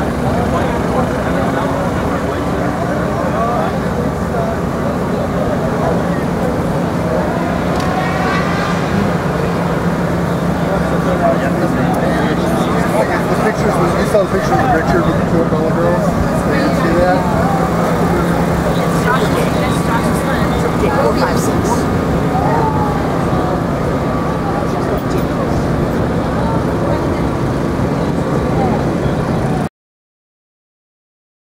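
Steady low machine hum with indistinct voices talking over it; the sound cuts off suddenly just before the end.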